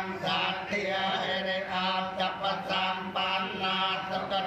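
Buddhist chanting by a group of voices, moving syllable by syllable in an even rhythm over a steady low tone.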